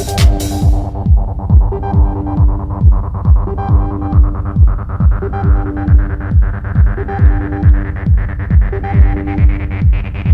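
Techno track: a steady kick drum a little over two beats a second under a repeating synth riff. The high percussion drops out about a second in, leaving kick and riff, and higher sound slowly creeps back in near the end.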